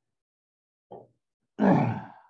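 A man's hesitation sounds in a pause in speech. First silence, then a brief low murmur about a second in, then a louder drawn-out 'uh' near the end.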